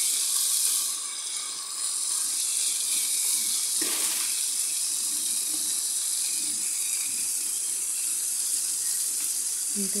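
Minced beef and vegetables sizzling steadily in a frying pan, stirred with a wooden spoon at first, with a single knock about four seconds in.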